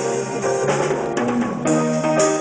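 Live band playing: sustained piano chords over a drum kit. A quick run of drum hits comes in the middle, and a louder new chord lands near the end.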